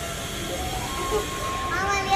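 Steady background hum and hiss of a large airport terminal hall, with faint voices near the end.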